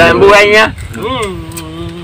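A man's voice in two drawn-out vocal phrases, the first loud and the second, about a second in, quieter and held on one pitch, over a steady low rumble of background noise.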